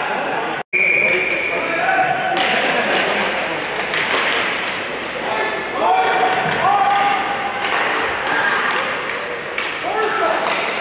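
Ice hockey game in an indoor rink: raised voices calling and shouting over sharp clacks and knocks of sticks and puck and thuds against the boards, echoing in a large hall. The sound cuts out completely for an instant just under a second in.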